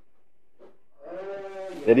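A man's voice: after about a second of quiet, a drawn-out, wavering hesitation sound ('eee'), and speech begins right at the end.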